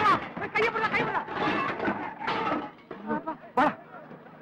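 Voices speaking in film dialogue, fading after about two seconds, with a short sharp knock shortly before the end.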